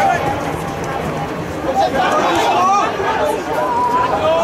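Several voices calling out and chatting at once during play in an amateur football match, over a steady open-air background.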